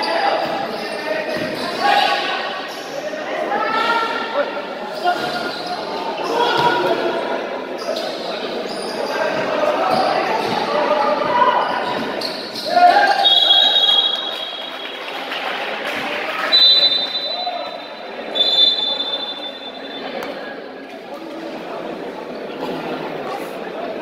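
A basketball game in a large gym: a ball dribbled and bouncing on the court amid shouting voices of players and spectators, with the echo of the hall. A few short high steady tones come about halfway through.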